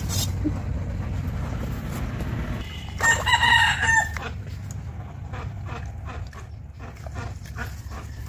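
A rooster crowing once, about three seconds in: a single call of about a second that drops at its end, the loudest sound here, over a steady low rumble.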